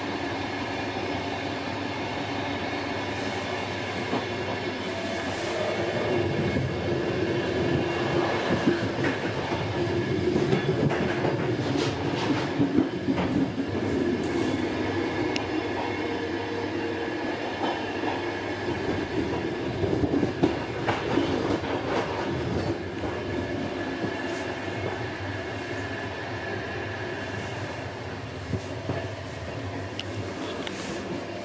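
Passenger train carriage running at speed, heard from inside: a steady rumble of wheels on rail that grows louder through the middle and eases off near the end, with scattered clicks and knocks from the track.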